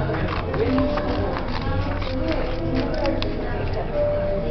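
Background voices and music of a busy public room, with a quick run of sharp clicks and paper rustles close by as loose printed pages and a pair of scissors are handled.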